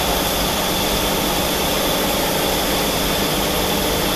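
Steady running noise of workshop machinery: an even hum and hiss with a faint high whine, holding constant throughout.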